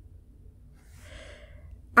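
A soft breath drawn in about a second in, over a low steady hum of room noise.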